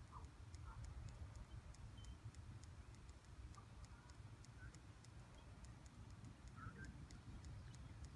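Near silence: faint outdoor background with a low rumble, a faint high ticking about four times a second, and a few brief faint chirps.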